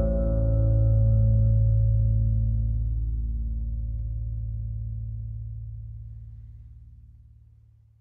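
Final chord of a son jarocho string band, plucked strings and bass, ringing out and fading slowly over several seconds until it is nearly gone: the end of the piece.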